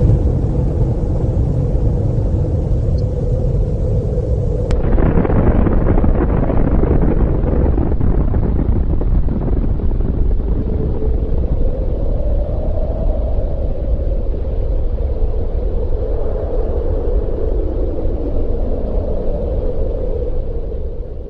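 Nuclear explosion: a loud, deep, continuous rumble that swells about five seconds in and then holds steady.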